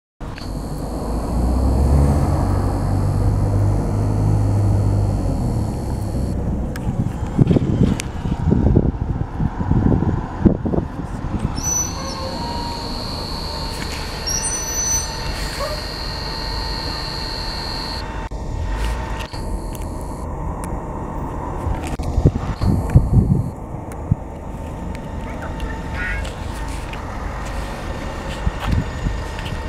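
A single-decker bus running past for the first several seconds, a low engine rumble. Then irregular rubbing and knocks as the camera is handled and covered, with a steady high tone for several seconds in the middle.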